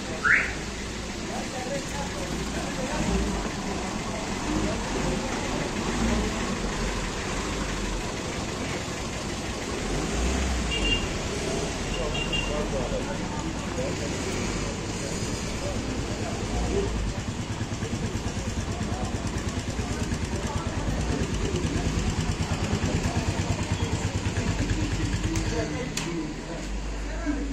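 Busy street ambience: indistinct voices and motor-vehicle noise, with an engine running close by and pulsing evenly in the second half. A brief high rising squeak right at the start.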